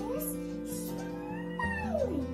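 Background music with steady sustained notes. A high sliding, voice-like call rises over it at the start, and another falls steeply near the end.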